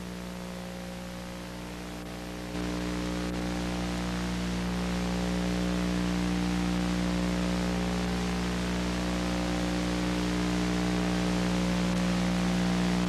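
Steady hiss with a buzzing electrical hum made of many evenly spaced tones, from an old broadcast recording with no programme sound; it steps up in level about two and a half seconds in and then holds steady.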